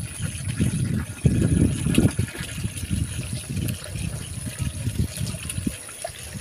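Water running from an outdoor tap into a tub, with irregular splashing as fish pieces are rinsed by hand in a steel bowl of water.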